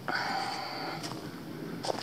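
A person breathing close to the microphone, with a couple of light clicks about a second in and near the end.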